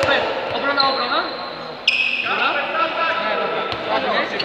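Indoor handball play on a sports-hall court: the ball bouncing and shoes squeaking on the floor, with players' voices echoing around it. A sudden sharp squeal just before the middle is the loudest moment.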